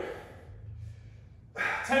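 A man's breath blown out hard from exertion during Russian twists, a short breathy hiss, over a steady low hum.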